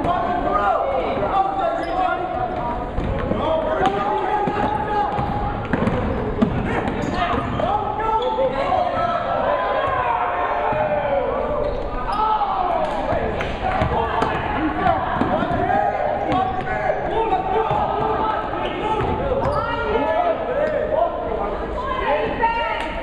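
Live basketball game sound in a gym: a basketball bouncing on the hardwood floor amid a steady din of crowd and players' voices, with scattered sharp knocks.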